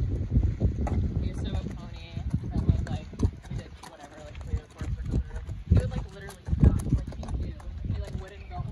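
Horse walking on packed dirt, its hooves thudding at a walk, among low voices, with wind on the microphone for the first couple of seconds.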